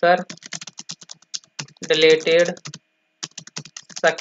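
Typing on a computer keyboard: a quick run of key clicks, pausing briefly about three seconds in.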